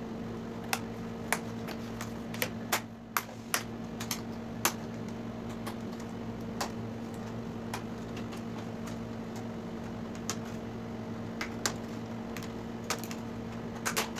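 Irregular small clicks and taps from hands handling a bare LCD TV panel and its frame, bunched in the first few seconds and sparser after; a steady low electrical hum runs underneath.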